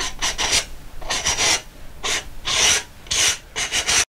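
Paintbrush rubbing on a stretched canvas at an easel. It makes about six short, scratchy strokes, each a fraction of a second long, at an uneven rhythm.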